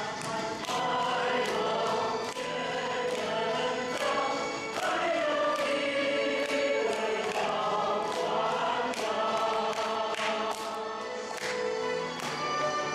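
A male solo singer singing in full, sustained voice, with instrumental accompaniment.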